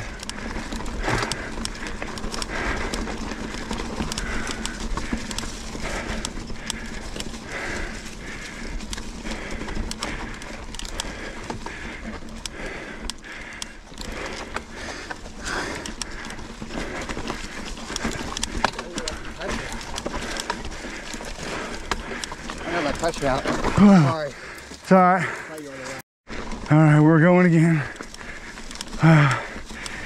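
Specialized Enduro mountain bike rolling fast down a leaf-covered dirt trail, tyres and drivetrain running with a repeating noise from the bike's front end that the rider has just noticed. Near the end a few loud voice sounds break in.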